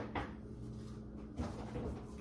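A man spitting, heard faintly as a couple of soft, short sounds over a low steady hum.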